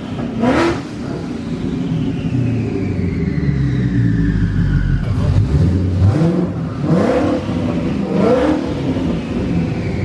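Twin-turbocharged Ford Coyote 5.0 V8 of a 2019 Mustang GT running on a chassis dyno, with three short throttle blips. A high whine falls away slowly after the first blip.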